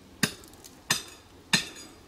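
Hammer striking rock: three sharp, clinking blows, evenly spaced about two-thirds of a second apart.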